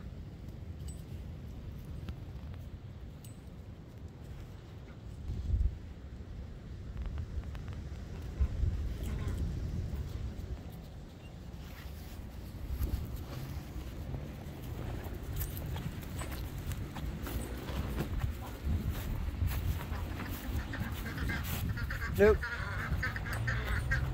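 Low wind rumble on the microphone through most of it, then domestic ducks calling in a quick run of quacks near the end.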